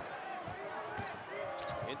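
Basketball dribbled on a hardwood arena court: several low bounces at uneven spacing, over the arena's background noise, with faint voices in the second half.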